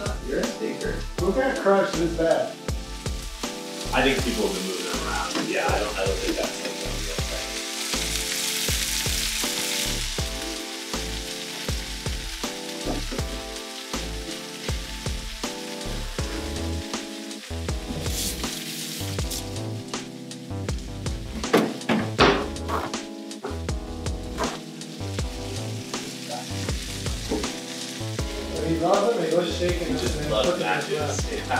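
Food sizzling in a pan under background music with a steady beat, the sizzle swelling louder twice. A few sharp clinks of porcelain plates about two-thirds of the way through.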